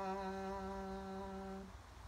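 A woman's unaccompanied singing voice holding one long, steady low note, the song's final note, which stops near the end.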